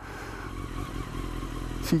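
A 2002 Honda CBR954RR Fireblade's inline-four engine running as the bike rolls slowly in traffic, heard as a steady low rush on the bike-mounted microphone.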